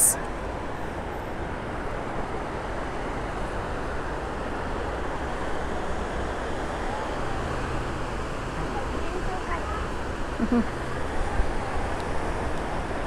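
Steady outdoor noise of wind on the microphone mixed with distant road traffic, with faint voices briefly near the end.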